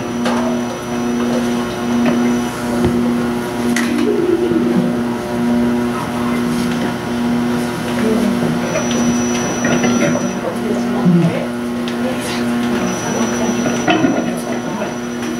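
Stage keyboard holding one low note that pulses evenly on and off, a little faster than once a second, as its sound is being set up before the next song. Quiet talk and laughter run underneath.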